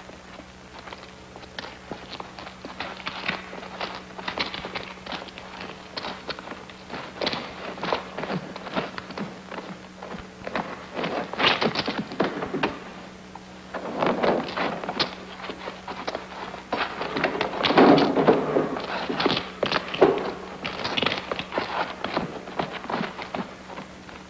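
A dense, irregular run of dull knocks and thuds, several a second, with a brief lull a little past halfway, over a low steady hum.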